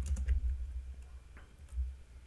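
Computer keyboard being typed on: a few separate light key clicks, over a steady low hum.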